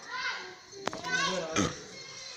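Children's voices chattering in a crowded room, with one sharp click a little before the middle.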